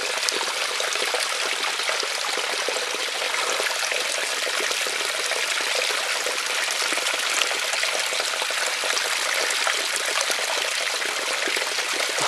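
Shallow creek water trickling and rushing steadily, with small splashes from hands rinsing a lump of clay matrix in a mesh sifter basket.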